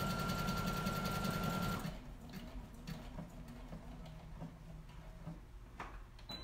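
Sewing machine stitching a buttonhole at an even speed with a thin steady whine, stopping abruptly about two seconds in. After that only faint clicks, with a sharper click near the end.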